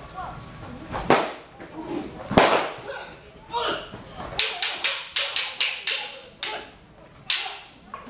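Wooden fighting staffs striking each other in a two-man staff fight set: single sharp clacks, then a quick run of about six strikes in under two seconds, then two more strikes spaced apart.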